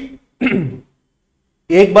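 A man clears his throat once, briefly, with a falling pitch.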